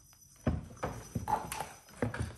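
Christmas decorations (bottle-brush trees and flat wooden ornaments) being packed into a clear plastic storage box: a quick run of light knocks and rubbing, starting about half a second in.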